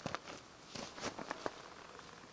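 Faint footsteps and scuffs of a person moving about on grass and dry dirt, with a few soft knocks in the first second and a half.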